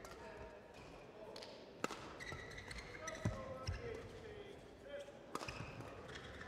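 Badminton rally: sharp racket strikes on a shuttlecock, four in all, spaced irregularly, with short shoe squeaks on the court floor between them.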